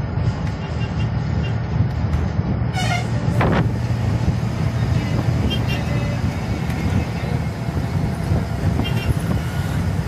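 Ashok Leyland Viking bus's diesel engine and road noise droning steadily, heard from inside the cabin while driving. About three seconds in, a horn toots briefly, followed by a quick falling whine.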